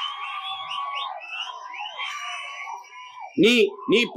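Rally crowd cheering and whistling, shrill whistles over a mass of voices; it dies down a little over three seconds in as a man's amplified voice resumes.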